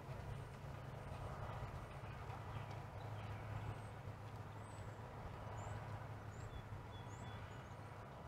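Faint outdoor ambience: a steady low hum with a few short, high bird chirps scattered through it.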